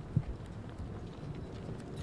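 Footsteps on street pavement, a series of low knocks with one sharper step just after the start, over a faint street hum.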